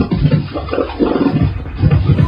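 Beatboxing into a handheld microphone, amplified through the venue's PA speakers: choppy vocal beats and scratch-like sounds.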